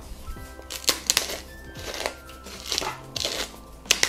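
Hand-twisted pepper mill grinding peppercorns in several short, crunchy bursts.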